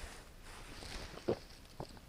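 A man drinking the last of his coffee from a mug, faint gulping with a short soft sound about a second and a quarter in.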